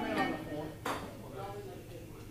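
Indistinct talking between songs, with one sharp click about a second in.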